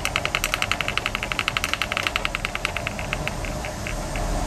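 Magnetic stir bar spinning in a glass beaker on a stir plate, clicking against the glass in a quick, even ticking of about a dozen a second. The ticking thins out and stops about three seconds in as the stirring ends.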